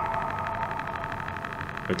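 Creepy sound effect from a horror animation's soundtrack: a steady cluster of high tones with a fast flutter, slowly fading.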